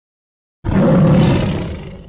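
Tiger roar sound effect, starting suddenly about half a second in, loudest at first, then fading and cutting off abruptly near the end.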